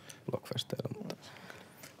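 Only speech: a man speaking quietly, a brief word or two, in a lull between louder talk.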